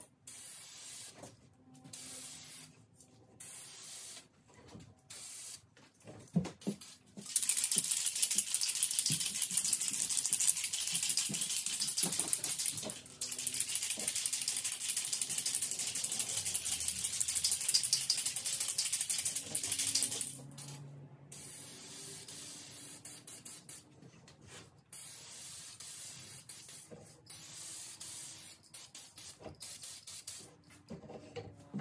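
Aerosol can of 2K clear coat spraying a light mist coat onto a guitar neck: a few short hisses in the first seconds, then a long steady hiss of about twelve seconds, broken once briefly, after which it goes quieter.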